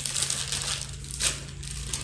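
Plastic packaging crinkling and rustling as it is handled, with a sharper crackle a little over a second in.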